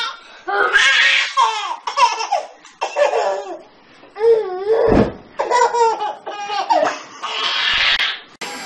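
A baby laughing hard in many short, high-pitched bursts at an older child jumping about in front of it. One sharp thump lands about five seconds in.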